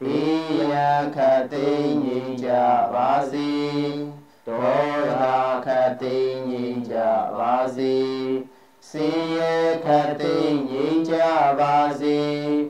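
Buddhist devotional chanting: a voice intoning long melodic phrases, each about four seconds long, broken by short pauses for breath.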